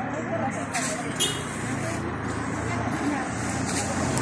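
Indistinct chatter of a crowd of people mixed with the steady rumble of street traffic.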